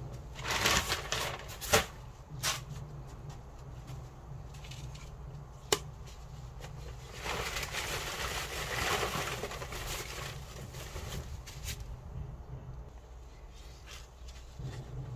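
Potting soil being scooped and poured into the back of a broken glazed clay jar: a short rustling pour near the start, a longer pour in the second half, and a few sharp clicks of grit or a tool against the pot.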